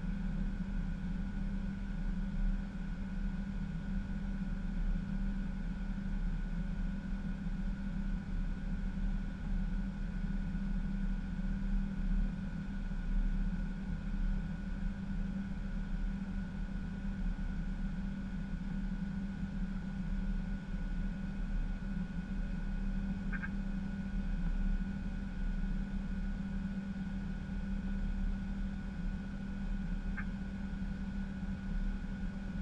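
Airbus A320 flight-deck noise in the climb: a steady drone of engines and airflow, with a low hum and a faint steady higher tone.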